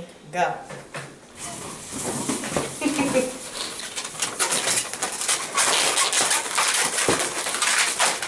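Latex twisting balloons rubbing and squeaking as they are bent and twisted by hand, a dense run of short squeaks and rubbing that starts about a second and a half in.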